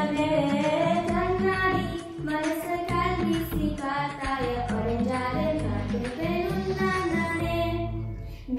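Young girls' voices singing a flowing, held-note melody over a low instrumental accompaniment.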